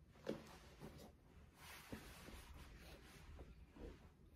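Faint handling noise from a pair of sneakers being turned over in the hands: a soft knock shortly after the start, then rustling and a few light taps.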